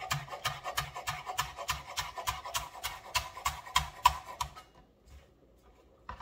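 Chef's knife chopping green onion on a bamboo cutting board: a quick, even rhythm of about four cuts a second that stops about four and a half seconds in.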